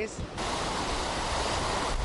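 Tropical-storm wind blowing hard, heard as a steady rushing noise that cuts in abruptly about half a second in.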